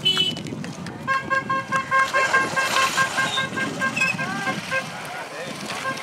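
A vehicle horn honking in a quick string of short beeps at one steady pitch for about four seconds, starting about a second in, over crowd chatter.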